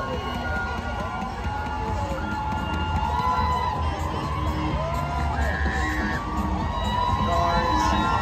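Parade-route crowd cheering and shouting, many voices calling out at once over a steady low rumble.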